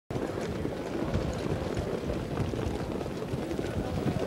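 Steady low rumbling background noise with faint scattered ticks, no clear pitched source.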